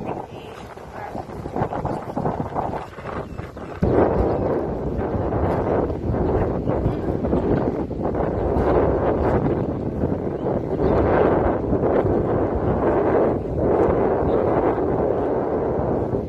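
Wind buffeting the phone's microphone in uneven gusts, jumping louder about four seconds in.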